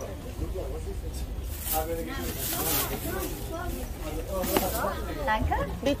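Indistinct voices of people talking nearby, with several short bursts of hiss and a steady low rumble underneath.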